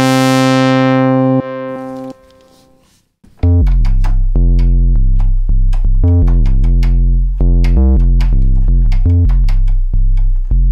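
Softube Model 82 software monosynth, an emulation of the Roland SH-101, auditioning bass presets. A held note's bright filter sweep fades and dies away over the first three seconds. Then a deep bass line of short, punchy notes starts, changing pitch.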